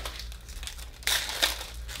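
Upper Deck hockey cards and foil pack wrappers rustling and crinkling in hands as cards are slid apart, with a louder rustle about a second in.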